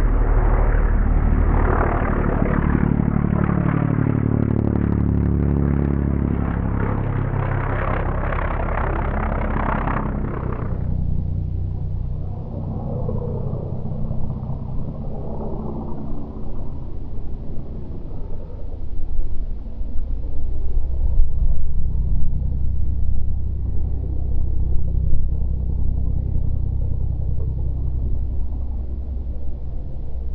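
Pitts Special S2S aerobatic biplane's piston engine and propeller going by low and close, the pitch falling steadily as it passes. About ten seconds in the sound drops to a fainter, lower rumble as the plane climbs away.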